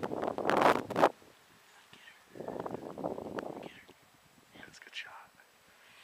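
A man's hard, breathy exhales or whispers close to the microphone: a loud burst lasting about a second, then a second one about two seconds in, and faint short sounds near the end.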